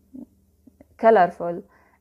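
A woman's speaking voice: a short pause, then a hesitant drawn-out 'aah' and a brief spoken sound about a second in.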